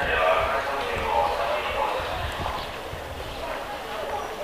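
A voice speaking on the station platform, most likely a public-address announcement, trailing off about halfway through. Low, irregular knocks run underneath.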